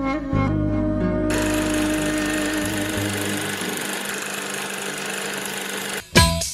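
Soft music gives way, about a second in, to a steady rattling whirr of a film projector running, which goes on to the end as the music fades out.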